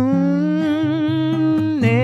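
A male singer holding one long wordless note with vibrato over acoustic guitar, dropping to a lower note near the end.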